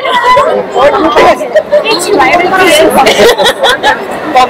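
Only speech: several people chatting at once, close by.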